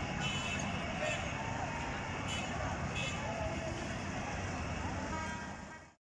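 Street noise of small auto-rickshaw (tuk-tuk) engines driving past, mixed with a crowd's distant voices and shouts. It fades out near the end.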